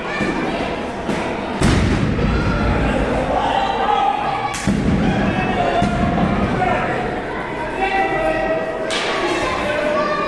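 A wrestler's dive from the top rope landing on the ring: one heavy thump about a second and a half in, with the ring's boards booming after it, then two more sharp thumps near the middle and near the end, over crowd voices in a large hall.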